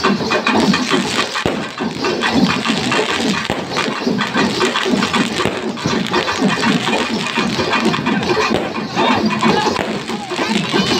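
Loud traditional festival music, dense and percussive, running without a break over the din of a large crowd.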